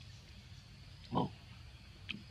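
A single short, low grunt from a macaque, about a second in, over faint steady background noise.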